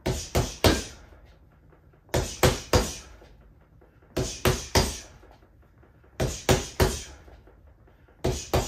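A Quiet Punch doorway-mounted punching bag hit with four one-two-three combinations: jab, cross, lead hook. Each combination is three quick thuds within under a second, and the combinations come about two seconds apart.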